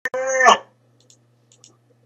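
A sharp click, then a short steady pitched tone of about a third of a second, cut off by a second click. After it comes a low steady hum with a few faint ticks.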